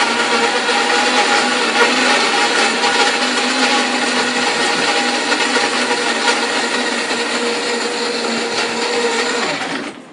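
Electric blender blending a drink, its motor running at a steady high speed with a churning whir, then winding down and cutting off near the end.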